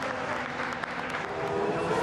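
A group of people clapping.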